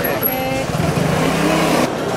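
A motor vehicle engine running close by in a busy street, with people talking over it; the sound cuts off abruptly near the end.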